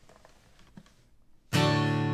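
Near quiet with a few faint clicks, then, about a second and a half in, an acoustic guitar strummed once on a D chord and left ringing.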